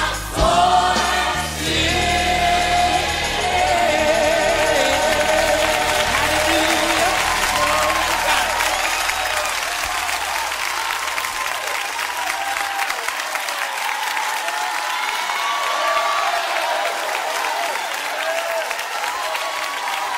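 A gospel choir sings with a band backing it, as the closing of a live song. The band's low end drops out about ten seconds in, and the congregation's applause and cheering carry on under a few voices.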